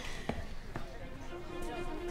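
Two dull thumps within the first second, then quiet background music with held, sustained notes fading in.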